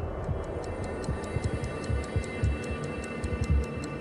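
Tense background music with a steady ticking, about four ticks a second, over deep irregular pulses.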